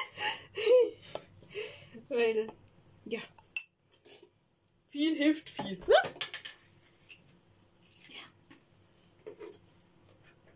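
A metal spoon clinking against a cocoa tin and cups, with a few sharp knocks about three and six seconds in, mixed with laughter.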